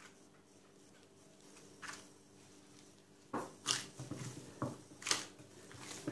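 Dough being kneaded by hand in a glass bowl, with a plastic glove on the kneading hand: a handful of short, soft squashing and rustling strokes, mostly in the second half, over a faint steady hum.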